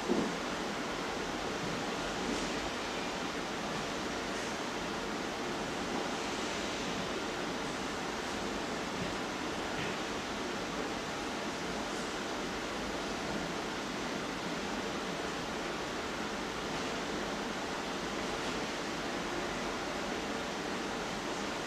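A steady, even rushing noise like hiss, with a small bump right at the start.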